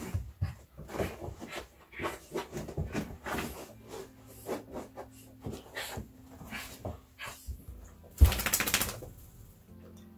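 A freshly bathed Yorkshire terrier scrabbling, scuffing and rubbing itself on carpet and a runner rug: a string of short scuffs and thumps, with a louder rustling burst about eight seconds in.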